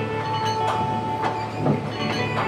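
Factory molding machine running, with sharp mechanical knocks about twice a second over a steady hum, with background music underneath.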